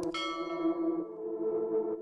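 A bell chime sound effect struck once just after the start and fading within about a second, over steady ambient background music.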